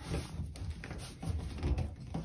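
Faint handling sounds of a trim sleeve being pulled off a Delta shower valve cartridge by hand: low rubbing and a few light knocks.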